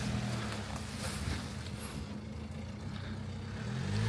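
Ford Ranger pickup's engine running steadily at low revs as the truck crawls slowly along a muddy, snowy track.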